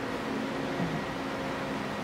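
Steady low hum and even hiss of workshop background noise, with no distinct event.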